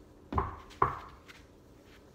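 Two thumps about half a second apart, the second slightly louder: stockinged feet landing one after the other as a person steps up onto a low padded floor balance beam.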